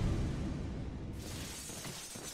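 Crashing, shattering impact sound effect from an anime's big punch attack, dying away slowly, with music under it.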